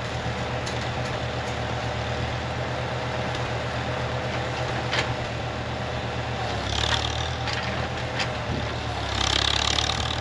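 Tractor engine running steadily while it powers a three-point backhoe digging a trench. The engine gets louder, with a hiss, about seven seconds in and again near the end, as the backhoe hydraulics are worked.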